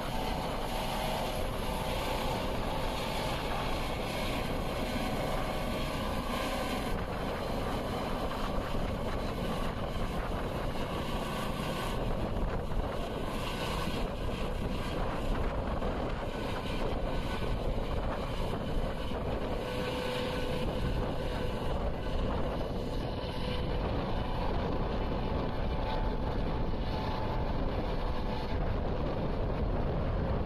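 Turbine helicopter with a fenestron tail rotor running steadily as it lifts off and climbs away overhead, with wind buffeting the microphone.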